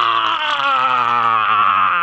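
A man's long drawn-out yell, held for about two seconds with a wavering pitch that sinks slightly.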